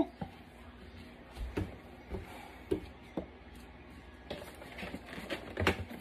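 Faint handling noises: a scattering of soft clicks and taps as a coiled braided charging cable is turned over and untangled in the hands.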